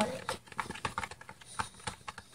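A stirring stick clicking and tapping irregularly against a plastic tub while borax activator is mixed into a glue mixture to make slime.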